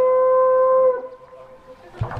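A wind instrument holds one steady note, which stops about a second in.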